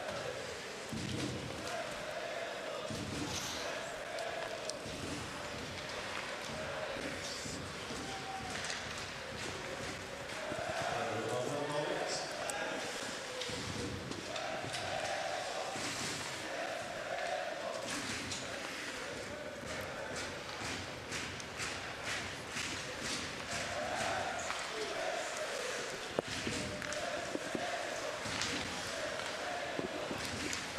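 Ice hockey arena crowd noise: many voices swelling in a repeating pattern, like fans chanting. Over it come sharp clacks and thuds of sticks, puck and bodies against the ice and boards.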